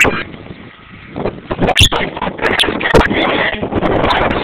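Blizzard wind buffeting a handheld camera's microphone, with handling knocks and rubbing as the camera is moved; a sharp knock at the start, a quieter moment, then steady, ragged buffeting with many sharp clicks from about a second in.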